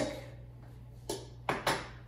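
A few short, soft knocks of kitchen bowls and containers being handled and set down on the counter, the first about a second in and two close together near the end. A steady low hum runs underneath.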